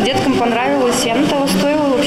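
Speech: a voice talking without pause, its words not picked up by the transcript.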